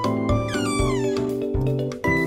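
A single cat-like meow that slides down in pitch, over continuous background music with a steady bass beat.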